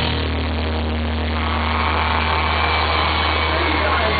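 A live rock band's electric guitars and bass holding a distorted chord that rings on as a steady low drone, with a thin high tone above it.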